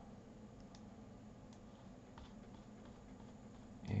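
A few faint, scattered clicks of a computer mouse over a low steady hum.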